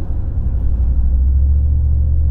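Low, steady rumble of a car's engine and tyres heard inside the moving car's cabin, growing stronger about a second in.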